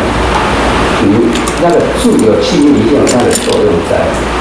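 Speech only: a man lecturing in Mandarin.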